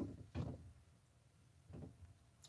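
Three short, soft puffs on a tobacco pipe, drawn through the stem: one at the start, one about half a second in and one near the end.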